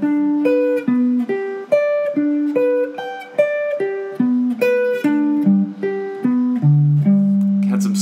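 Clean electric guitar, a Fender Stratocaster, picking a spread-triad arpeggio in G major high on the neck. Single notes come evenly, about two to three a second, each ringing into the next, with wide jumps in pitch, and the run ends on a long held low note.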